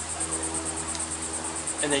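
Insects chirping in a high-pitched, fast, even pulse, about seven pulses a second, running steadily behind the pause in speech.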